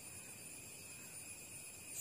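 Near silence: faint room tone with a steady high hiss and no distinct sound.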